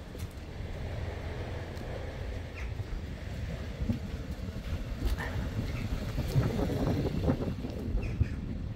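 Wind rumbling on the microphone, with handling noise as the camera and tablet are carried outdoors.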